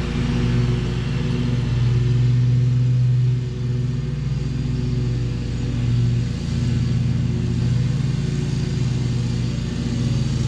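Exmark stand-on commercial mower running steadily with its cutting deck engaged while mowing. The engine note dips briefly twice, a little after three seconds and again around six seconds, as the mower turns.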